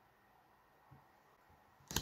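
Quiet room tone with one faint tap about a second in.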